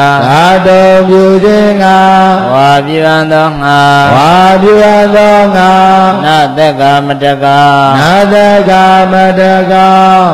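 A single male voice chanting Pali text in a slow, melodic recitation: long held notes joined by rising and falling glides, with short breaths between phrases.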